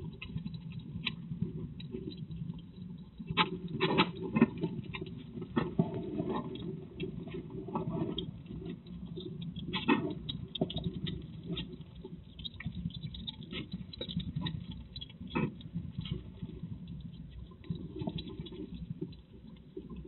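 An animal feeding close up on a wooden box floor: irregular crunching and chewing clicks with claws tapping and scraping on the wood, busiest about four seconds in and again around ten seconds.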